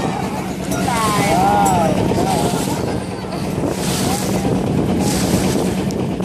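Wind on the microphone and water splashing from a long race boat's paddles, with voices shouting briefly between about one and two seconds in and a steady low hum underneath.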